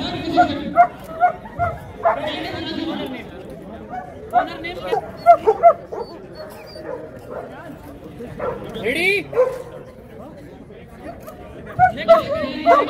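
Dog barking in short runs of quick yaps, a few at a time, with people talking in the background.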